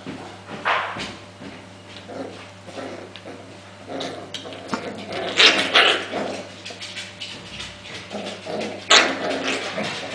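Pembroke Welsh Corgi puppies, five weeks old, play-fighting, with short high yips and barks among scuffling. The cries are loudest about five and a half seconds in and again about nine seconds in.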